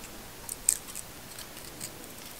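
Fingers and long nails handling a phone grip band and peeling its adhesive backing liner: scattered small clicks and crinkles, the sharpest a little under a second in.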